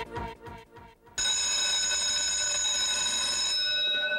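Music breaks off and dies away. About a second in, an electric school bell starts ringing, a steady unbroken ring whose highest tones fade out near the end.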